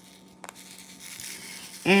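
Quiet handling sounds at a diamond painting canvas: one light click about half a second in, then faint rustling of the canvas's plastic cover film.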